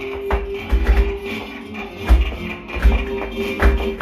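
Flamenco music with guitar, with irregular sharp taps and low thuds of flamenco zapateado footwork, shoe soles striking a canvas laid on the floor.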